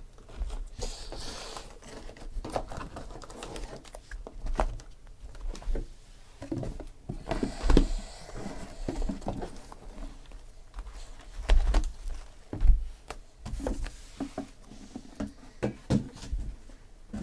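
Shrink-wrapped cardboard trading-card boxes being handled and stacked: irregular knocks and taps as boxes are set down on one another, with crinkling and sliding of the plastic wrap. The loudest knocks come about halfway through and again a few seconds later.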